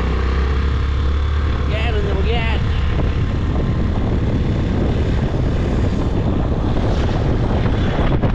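Steady noise of riding on a motor scooter: engine and road noise with wind on the microphone, and a low drone that is strongest in the first few seconds. A short voice sound comes about two seconds in.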